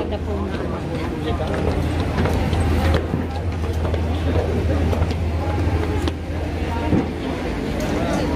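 Steady low machinery hum of a cable car station, with people talking in the crowd over it.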